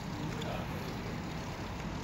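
Electric skateboard's wheels rolling over asphalt, a steady low rumble with street noise around it.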